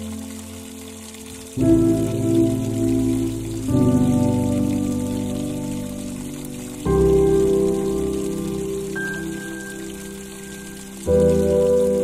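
Slow, soft piano chords, four of them struck a few seconds apart, each ringing and fading, with a single high note added between the third and fourth, over a steady hiss of soft rain.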